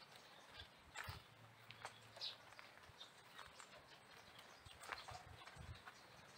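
Near silence: faint outdoor ambience with scattered soft clicks and low knocks, and a short high chirp about two seconds in.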